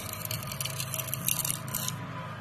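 Metal scraper blade scraping oil undercoating off a steel suspension arm under a vehicle: a quick run of short scraping strokes, busiest in the second half.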